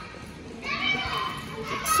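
A crowd of children's voices, chattering and calling out as they play in a school gym.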